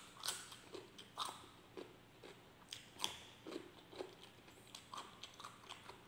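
Close-up crunching of raw cucumber being bitten and chewed, a run of irregular crisp crunches about two a second.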